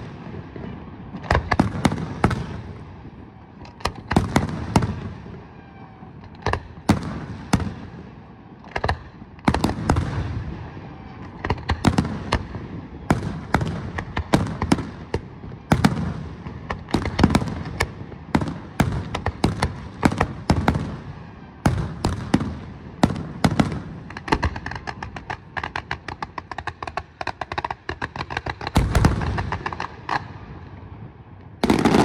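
Aerial fireworks shells from a professional display bursting in quick succession: a dense, unbroken run of sharp bangs, often several a second, with a loud cluster of bursts near the end.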